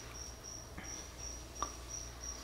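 A cricket chirping: short high notes in an even pulse of about four a second, over a faint low hum. A single faint tick comes about one and a half seconds in.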